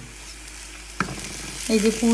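Mashed green-pea filling frying in oil in a nonstick pan and being stirred with a wooden spatula: a soft, faint sizzle with one sharp tap about halfway through.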